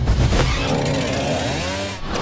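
Trailer sound effect: a harsh, engine-like drone whose pitch swoops up and down in several arcs, following the last hit of an electronic beat.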